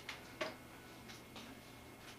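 A few soft clicks, the loudest about half a second in and fainter ones about a second later, over a quiet room with a faint steady high whine.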